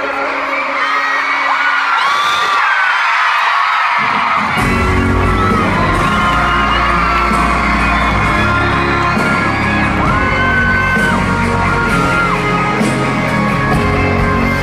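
Live pop band performing in a stadium, with a crowd of fans screaming and singing along close by. The low instruments are out at first and come back in about four and a half seconds in.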